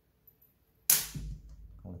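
A single sharp clack about a second in, as the strap is taken off a smartwatch and handled.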